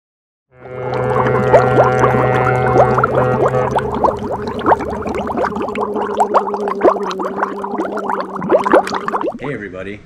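Title-card sound: a droning chord with many quick rising chirps and clicks over it, like sea-creature calls. It starts after about half a second of silence, its lowest note drops out partway through, and it fades away about a second before the end.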